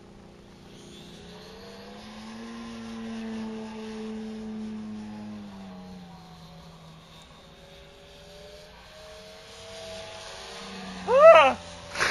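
Radio-controlled Pitts Model 12 biplane's engine droning in flight, its pitch and loudness slowly rising and falling as the model climbs, dives and passes. Near the end a brief loud voice-like call cuts in.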